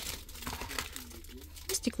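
Crinkling plastic wrappers and the light clicks and crackle of a plastic water bottle being handled as it is lifted out of a cardboard snack box.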